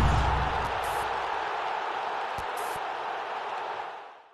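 Broadcast logo sting: a deep boom that fades out under a noisy whooshing wash, with a few faint ticks, dying away near the end.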